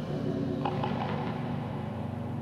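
Quiet studio room sound with a low steady hum and a few faint clicks, just before a live song starts.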